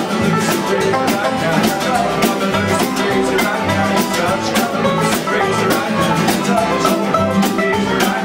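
Live banjo band playing an instrumental passage of a bluegrass-style arrangement, bright plucked banjo notes over a steady percussive beat.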